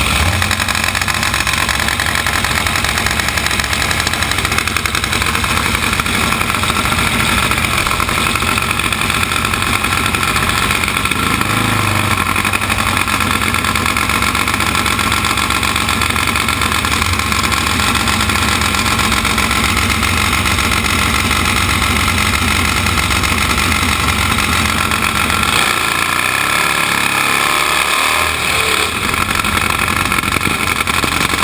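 Top Fuel Harley drag bike's nitro-burning V-twin engine running at idle through its open pipes, loud and steady, heard from the rider's helmet. Its low end thins out for a few seconds near the end.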